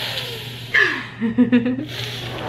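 A man and woman laughing and making playful vocal noises, after a short rush of noise at the start.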